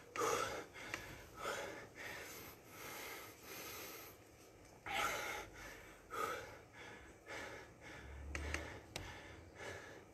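A man's heavy breathing close to the microphone, irregular breaths about every second, winded from bodyweight exercise. A few faint clicks near the end.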